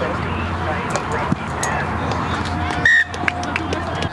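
A referee's whistle blows one short, sharp blast just under three seconds in, over the low murmur of sideline voices.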